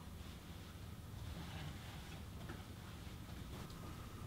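Faint room tone: a steady low hum with a few soft ticks, and a faint thin tone entering near the end.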